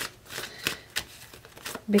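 Tarot deck being shuffled by hand, overhand, the cards giving a string of short, sharp slaps and flicks at uneven intervals.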